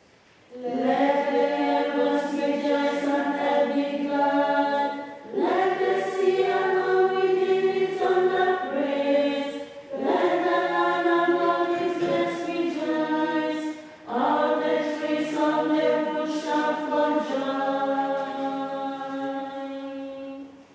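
A choir of sisters singing unaccompanied, in held phrases of about four to five seconds with brief pauses for breath between them.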